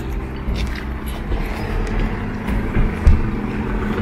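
Outdoor car-park ambience: a steady low rumble of vehicle traffic, with a single knock about three seconds in.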